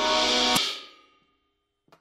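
Rock band music with sustained organ-like keyboard chords ends abruptly on a final drum-kit hit about half a second in, played as a hard ending in place of the song's fade-out. The ring dies away quickly into near silence, with a faint click near the end.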